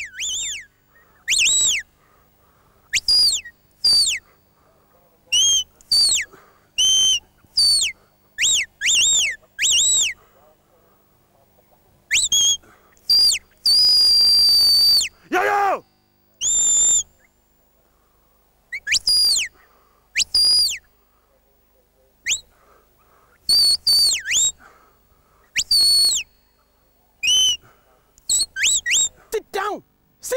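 Shepherd's whistle commands to a working sheepdog: a long series of short, shrill whistled blasts, many rising or falling in pitch, with silent gaps between. One long held note comes about fourteen seconds in, followed by a steep falling glide.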